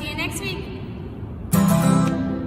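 Acoustic guitar, with a brief woman's voice at the start, then a louder strummed guitar chord about a second and a half in that rings on.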